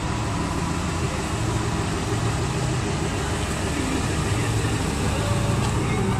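Ford F-150 pickup's engine idling steadily: a low, even hum under a broad hiss.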